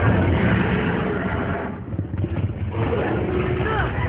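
Animated Tyrannosaurus rex roaring: a loud, rough, low roar through the first second and a half, then a second outburst with wavering higher cries near the end.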